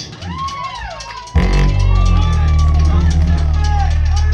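Live rock band on stage making swooping, wavering tones, then, about a second and a half in, a sudden loud sustained low drone that holds steady with gliding tones over it.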